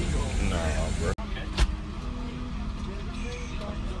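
Steady low rumble of an airliner cabin's background noise, with one sharp knock about a second and a half in.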